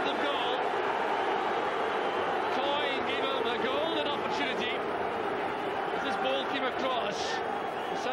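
Football crowd in the stands chanting and singing, many voices together at a steady level.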